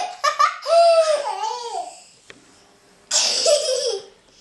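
A baby laughing in short, high-pitched bursts that glide up and down for about two seconds. About three seconds in, a second high-pitched child's laugh starts abruptly.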